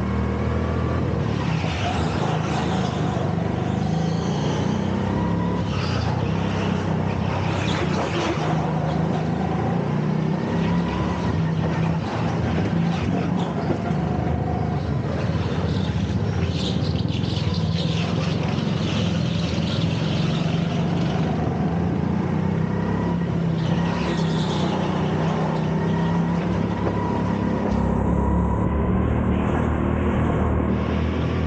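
Go-kart engine running at speed around a track, its pitch rising and falling steadily with the throttle through the corners.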